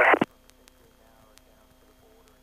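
A voice over the aircraft radio, thin and band-limited, cuts off abruptly about a quarter second in. A faint steady hum from the headset intercom feed follows.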